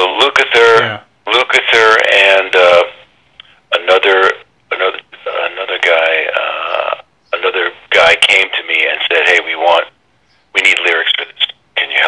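A voice heard over a narrow, thin telephone line, in phrases with short pauses.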